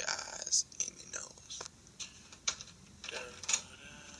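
Indistinct whispered voice from a home voice recording playing back on a computer, with a few sharp clicks scattered through it.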